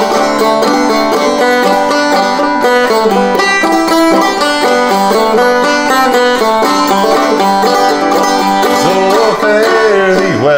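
Five-string banjo played frailing (clawhammer) style: a steady, rhythmic run of plucked and brushed notes carrying the tune.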